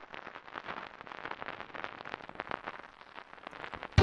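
Dense, irregular crackling: many small pops and clicks over a faint hiss, with no steady tone. It cuts off suddenly at the end.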